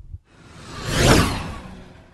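A whoosh sound effect that swells to a peak about a second in, then fades away, accompanying a logo dissolving into pixels.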